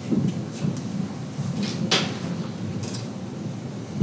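Scattered light knocks, bumps and rustling of things being handled, with a sharper knock about two seconds in, over a low room murmur.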